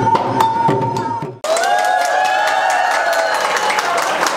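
Cambodian chhayam drums beating a rhythm under a held high tone, cutting off abruptly about a second and a half in. The crowd then comes in with a long shout, cheering and clapping, with clicks of small hand cymbals.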